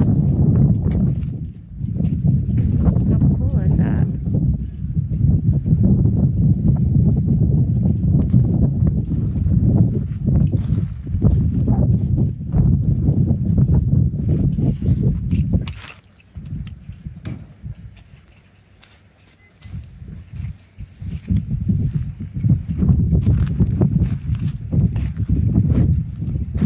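Wind buffeting the microphone: a loud, rough low rumble that drops away for a few seconds about two-thirds of the way through, then returns.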